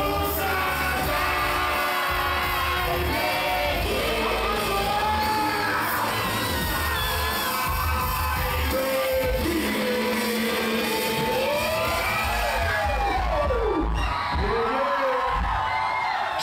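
Live hip-hop through a club PA: a heavy bass beat with several rappers' voices shouting and singing over it, and a crowd yelling along.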